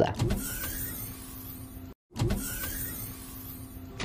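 A whirring sound effect played twice in a row. Each time it starts suddenly and fades into a steady hum over about two seconds, with a brief silence between the two.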